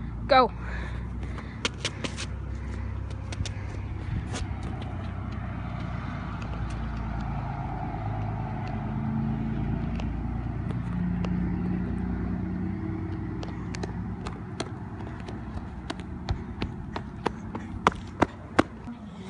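A motor vehicle going by on the street: a low rumble that swells in the middle and fades again. Scattered clicks and knocks from the phone being handled run through it.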